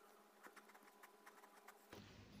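Near silence, with faint scratches and ticks of a pen drawing on paper.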